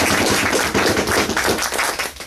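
Audience applauding, a dense clatter of many hands that starts to die away at the very end.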